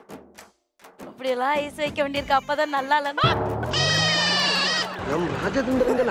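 A wobbling, warbling voice, then a held musical sound effect with a low rising note under bright high tones that lasts under two seconds and cuts off sharply, followed by voices.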